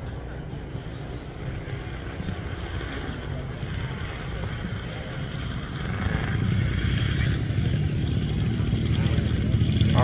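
Engines of two large 110-inch radio-controlled Muscle Bike biplanes running in flight. The sound grows louder from about six seconds in, as the planes come in low over the field.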